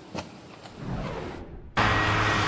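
Low background hiss, then near the end a sudden switch to loud, steady outdoor noise with a low motor hum.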